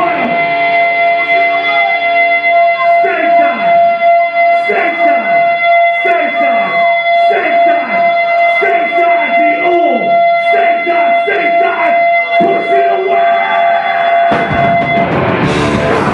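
Hardcore punk band playing live at high volume with electric guitars, a steady feedback whine held under a run of repeated falling pitch sweeps. The full band with drums crashes in near the end.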